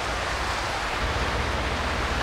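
Steady outdoor background noise, an even hiss with a low rumble underneath and no distinct events.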